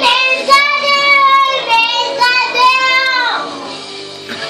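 A small child singing loudly, holding two long wavering notes; about three seconds in the voice slides down and fades.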